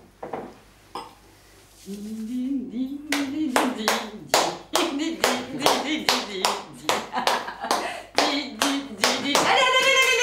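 Hands clapping in a steady rhythm, about two to three claps a second, starting about three seconds in, under a voice humming a tune that begins just before the claps.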